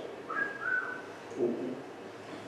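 A person gives a faint two-note wolf whistle: a short rising note, then a slightly longer note held fairly level.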